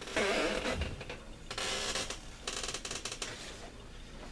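A cigar being lit and puffed: two short bursts of hissing about a second apart, the second with a rapid crackle.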